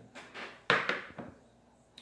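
A short knock from a tobacco tin being set down, about two-thirds of a second in, with fainter handling knocks before and after.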